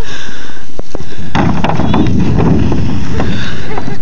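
Plastic sled sliding and scraping over thin snow as it comes down the hill toward the microphone, a loud, rough rumble that grows much stronger from about a second and a half in, with scattered knocks.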